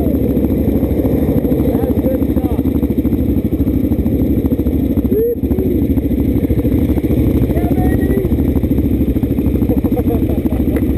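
Single-cylinder supermoto motorcycle engines idling at a standstill, with a steady, even pulse of firing strokes.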